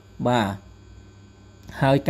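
A voice speaking Khmer: one syllable near the start, then a pause of about a second in which a steady electrical hum from the recording setup is heard, and speech resumes near the end.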